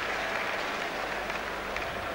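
Boxing crowd applauding at the end of a round: a steady wash of clapping and crowd noise.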